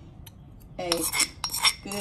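Metal spoon scraping and clinking against a small steel cup and a stone mortar while stirring seasoning into a sauce. It is quiet at first, then a run of ringing scrapes and clinks starts about a second in, with the sharpest clink near the end.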